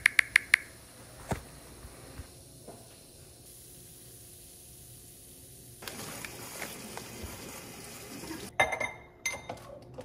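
Kitchen sounds of coffee being made: liquid poured into a ceramic mug, then a quick cluster of clinks as a glass coffee carafe and the mug are handled near the end.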